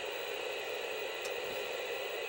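Steady hiss of static from a Jensen portable black-and-white TV's speaker, with no signal coming in.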